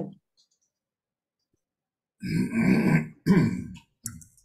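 A man clearing his throat twice over a call microphone, two short, loud rasps about two seconds in.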